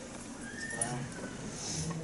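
Faint murmured voices in a quiet pause, with one brief high, rising-then-falling vocal sound about half a second in.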